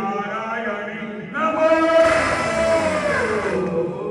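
Voices chanting a devotional aarti chant, with a long, loud held note through the middle that bends down in pitch near its end.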